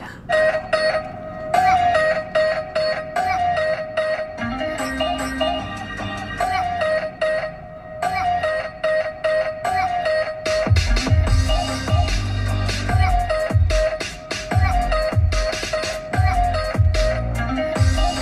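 Electronic dance music playing through the car's audio system with its Rockford subwoofer, heard inside the cabin: a repeating synth melody over a steady beat, with heavy bass coming in about ten seconds in.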